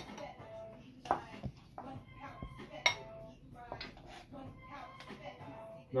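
Metal ice cream scooper knocking and scraping against a cooking pot and a glass bowl while scooping cooked rice, with a few sharp clinks spread through. Faint music plays underneath.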